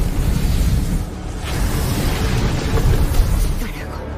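Film soundtrack: dramatic score music over a deep rumbling, booming sound effect.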